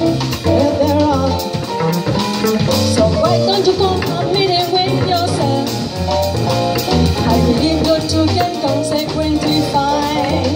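Live jazz quartet: a woman singing over piano, upright double bass and drum kit, the bass walking under a steady cymbal beat.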